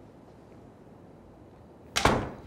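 Low, steady room hum, then one sharp bang near the end as a door is shut.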